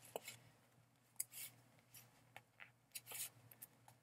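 Faint paper handling: a greeting card slid into a paper pocket of a handmade journal, with a few brief, soft rustles and small clicks over near silence.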